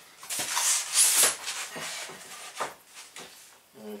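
Beveled plywood panels slid across a workbench: a scraping rub about a second long near the start, followed by a few light knocks of wood on wood as they are pushed together.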